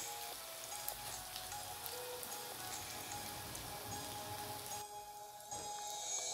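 Oil sizzling in a frying pan as pakoras fry, a steady hiss with scattered small crackles that thins out briefly near the end.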